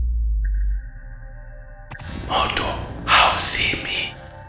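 Advert sound design: a deep rumble that fades out within the first second, a held electronic chord, a sharp click about two seconds in, then two loud rushing swells.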